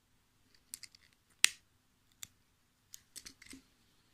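Scattered sharp clicks and snaps from fingers handling tatted lace and its cotton thread, the loudest about a second and a half in and a quick cluster near the end.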